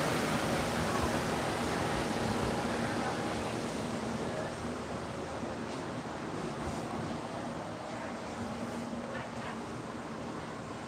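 Steady rushing air noise from an electric fan, slowly fading. A few faint light ticks come in the second half.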